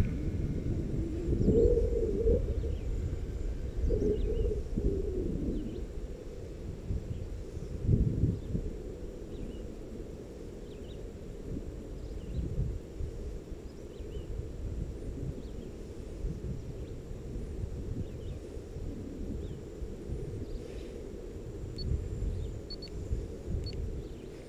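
Low, uneven rumble of wind buffeting the microphone outdoors, gusting louder in the first half, with a few faint bird chirps. No RC motor is heard.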